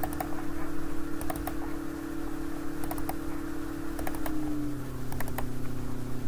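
Computer mouse clicking, several times in quick pairs like double-clicks, over a steady low electrical hum that drops slightly in pitch about four seconds in.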